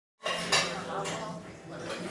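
Café sounds: crockery and cutlery clinking, with sharp clinks about half a second and a second in, over background voices and a steady low hum.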